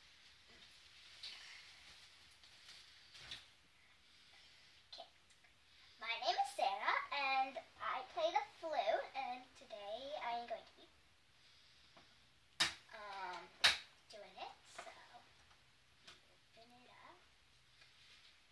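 A girl talking in short stretches, with a few sharp clicks in between. The two loudest clicks, a second apart in the second half, are the metal latches of a flute case snapping open.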